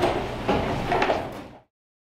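Classroom bustle of students packing up at the end of class: shuffling with a few knocks about half a second apart. It cuts off abruptly to silence about one and a half seconds in.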